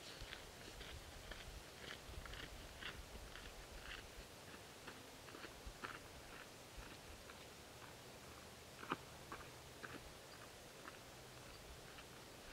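Faint footsteps crunching on a dirt trail, about two steps a second, growing fainter as the walker moves away, with one sharper click about nine seconds in.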